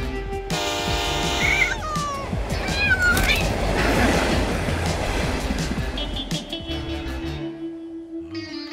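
Cartoon cat yowling in alarm, its cries sliding in pitch, after a loud held blaring tone about half a second in, then a loud rushing noise lasting a few seconds, all over background music.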